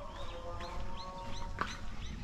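A small bird calling over and over in short, arched chirps, about three a second, over a low background rumble.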